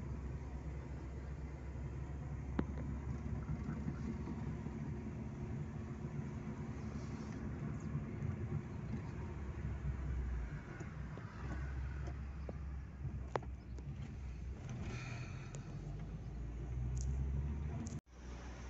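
Inside a moving car: a steady low rumble of engine and road noise, with a few faint clicks.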